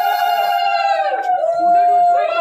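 A long held note with overtones, steady in pitch, that bends down and breaks off about a second in, then starts again and holds.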